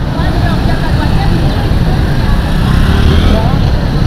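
Busy street noise: a steady low rumble of traffic with people's voices talking in the background.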